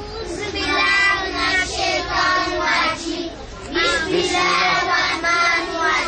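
A group of young children singing together in unison, in short phrases with brief breaths between them.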